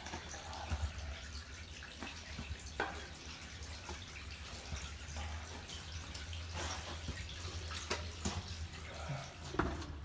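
Faint scrapes and scattered knocks of someone crawling on hands and knees through a narrow, wet concrete pipe, with a light trickle or drip of water, echoing in the pipe.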